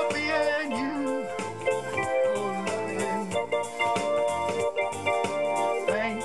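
Electronic keyboard playing an instrumental passage of a song, with organ-like held chords over a steady beat.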